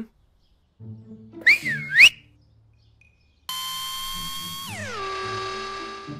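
A quick up-and-down two-note whistle over a low hum, then a sustained buzzy tone that drops in pitch about five seconds in and holds, as a boulder is lowered into place on a crane hook.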